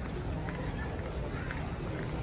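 Busy airport concourse ambience: indistinct voices of passers-by over a steady low hum, with footsteps ticking on the hard floor about twice a second.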